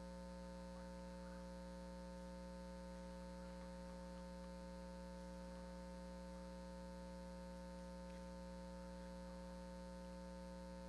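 Faint steady electrical mains hum, a few fixed tones that do not change.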